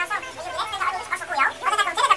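High-pitched voice sounds, unintelligible, wavering in pitch.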